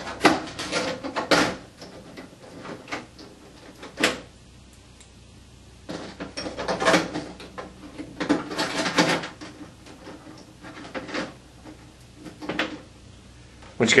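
Small cooling fans being pulled out of their cutouts in a metal light-fixture housing, their wire leads unplugged, and the fans set down: an irregular run of clicks, knocks and rattles, with a quieter gap of about two seconds near the middle.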